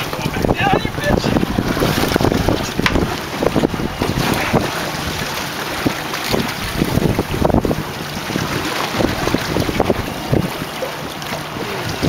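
Wind buffeting the microphone in uneven gusts, over the noise of the sea around a boat.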